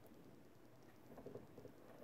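Near silence with faint handling taps from a stamp positioning tool as its hinged clear acrylic lid is swung open, a little over a second in.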